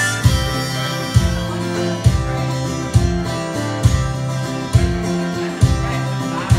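Live acoustic guitar strummed in a slow waltz-like rhythm, with a heavy bass strum about once a second, and a harmonica holding notes over it in an instrumental break.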